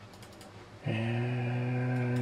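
A few faint clicks, then about a second in a man's long, flat-pitched hesitation hum, a held "mmm" without words.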